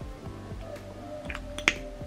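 Background music: sustained notes with a snapping beat, about one snap a second. The sharpest click comes near the end.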